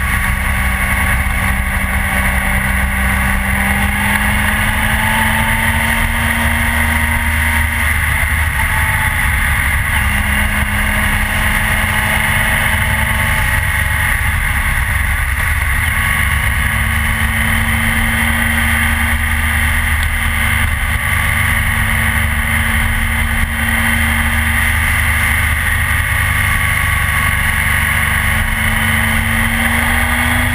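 Triumph Trophy touring motorcycle riding at road speed: a steady engine drone with wind rushing over the camera microphone. The engine note climbs slowly and drops back a few times as the rider accelerates and eases off.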